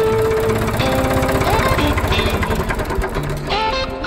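Blues guitar music over the Ford 3000 tractor's three-cylinder engine running, heard as a rapid, even pulsing beneath the music.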